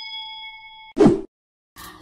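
Ringing tail of a notification-bell ding sound effect from a subscribe-button animation, fading and then cutting off just before a second in. A short, loud hit follows at about one second.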